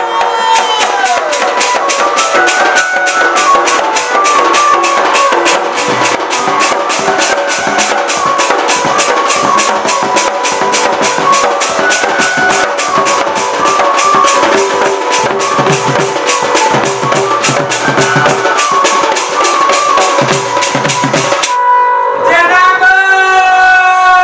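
Folk music instrumental passage: a hand-played dhol barrel drum beats fast, even strokes under a melody that steps up and down in short phrases. The drumming and melody stop about 21 seconds in, and a singer's voice takes over near the end.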